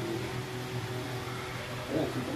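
Steady low hum with a faint constant room noise, a mechanical or electrical background drone.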